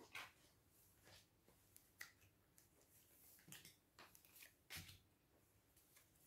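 Tarot cards being laid down on a table one by one: a few faint, short taps and slides of card on the tabletop, otherwise near silence.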